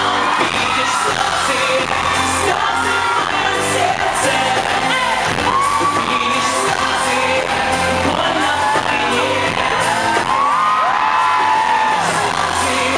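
Male pop singer singing live into a handheld microphone over a loud backing track with a steady beat.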